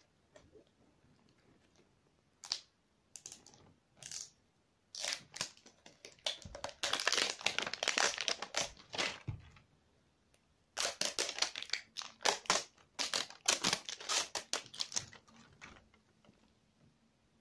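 Toy packaging being unwrapped: scattered clicks at first, then two long spells of dense crinkling and tearing, the first about five seconds in and the second from about eleven seconds in.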